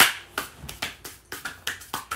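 Two people clapping their hands, about four or five claps a second and slightly out of step with each other, the first clap the loudest.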